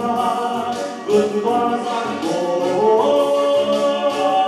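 A man singing a Vietnamese song through a handheld microphone over a recorded backing track. He holds long notes, with a rising slide between notes a little past the middle, over a pulsing bass line.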